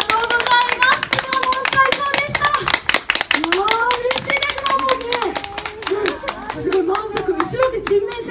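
A crowd clapping along, many sharp handclaps that thin out near the end, with a pitched voice through a loudspeaker underneath.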